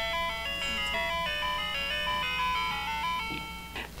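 Light-and-sound butterfly toy playing one of its built-in electronic songs: a simple tune of separate notes, one after another, that stops near the end.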